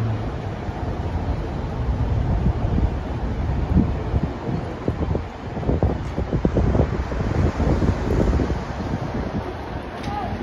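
Wind buffeting the microphone outdoors, an uneven low rumble that rises and falls in gusts.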